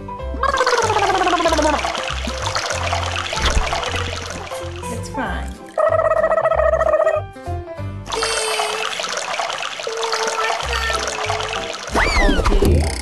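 Water pouring in a stream from a large plastic cup into clear plastic cups, in two long pours, the second starting about eight seconds in, over background music with a steady beat.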